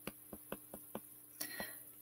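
Faint, light clicks of a stylus tapping and stroking on a tablet screen as a word is handwritten, several a second and unevenly spaced.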